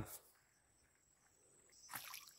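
Near silence, after a man's voice breaks off at the very start.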